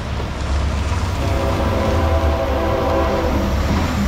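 Locomotive air horn sounding a steady held chord, starting about a second in, over a low engine rumble from a passing tanker truck.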